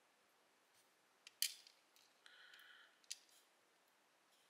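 Steel tweezers clicking and scraping against a plastic pin tray as small brass lock pins are set into it: a few sharp clicks, the loudest about one and a half seconds in, with a short scrape between them.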